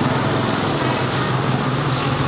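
Steady machinery noise with a constant high-pitched whine over a low hum.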